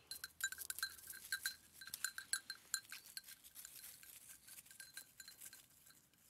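Small bell on a running goat clinking rapidly and irregularly, the same bright ring on every strike, busiest in the first three seconds and then thinning out.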